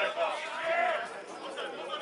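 Raised men's voices calling out during play on a football pitch.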